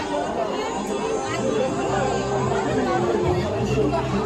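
Chatter of many voices mixed with music playing. A low, steady bass comes in about a second in.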